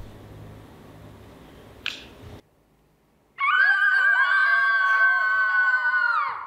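Quiet room tone with a click about two seconds in and a second of near silence, then a loud, long, high-pitched shriek with a wavering pitch and several tones layered together. It fades out at the very end.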